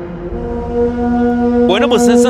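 A DJ's hard dance track drops into a breakdown. The bass and kick fall away and a single low synth note is held steadily, with a voice coming in over it near the end.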